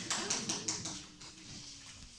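Scattered applause from a few hands: a quick run of sharp claps, about five a second, that dies away about a second in.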